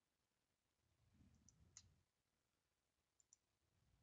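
Near silence with a few faint computer mouse clicks: one about two seconds in, then two quick ones just past three seconds.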